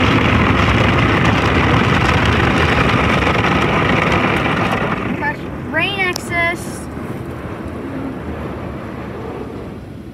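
Belanger tunnel car wash heard from inside the car: water spray and cloth wash brushes beat steadily on the body and glass, loud at first and easing off after about five seconds. A few brief high squeaks or vocal sounds come around six seconds in.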